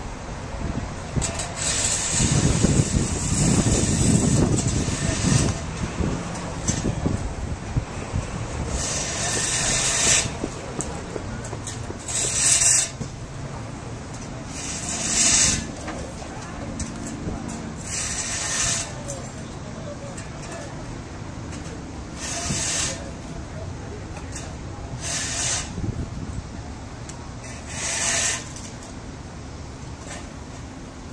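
Roadside noise of passing traffic: a low rumble about two to five seconds in, then short hissing whooshes every few seconds.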